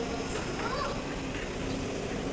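Steady outdoor background hum of vehicles and a parking lot, with faint voices of people in the distance.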